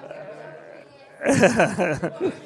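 A burst of laughter about a second in, short choppy bleating-like pulses, over a faint murmur of room noise.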